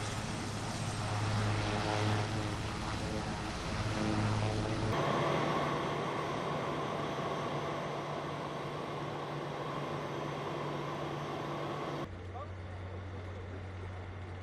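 Aircraft engines running steadily, with a constant low hum under a rushing noise; the sound changes abruptly twice, about five and twelve seconds in, as the shot cuts.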